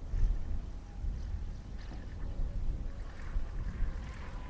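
Uneven low rumble of wind buffeting the microphone, swelling and fading, as a Grob G109 motor glider touches down and rolls out very quietly in a glide, with little engine sound.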